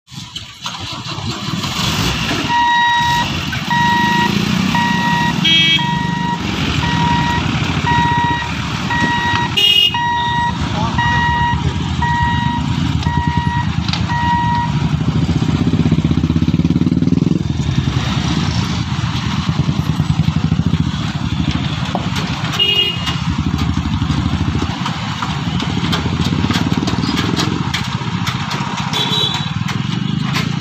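Motorcycle engines idling and pulling away in a crowd of traffic crossing a railway level crossing. For the first half an electronic beeper sounds evenly, about one and a half beeps a second, then stops. A few short horn toots sound over the engines.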